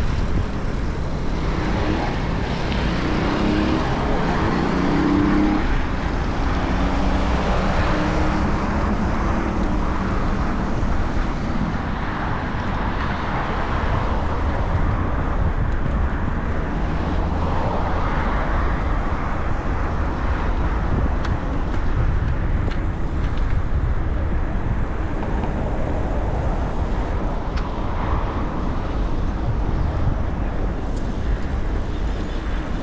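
Road traffic and wind rushing on the microphone of a moving bicycle: a steady noise of passing cars, with one vehicle's engine hum standing out for several seconds early in the ride.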